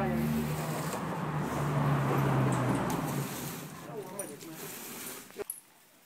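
A car passing by: a low engine hum and a rush of tyre noise that swell to their loudest about two seconds in, then fade away.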